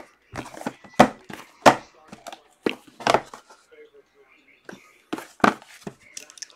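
Cardboard boxes of trading cards being handled and set down on a tabletop: a string of short, sharp knocks and taps, loudest about one and one-and-a-half seconds in.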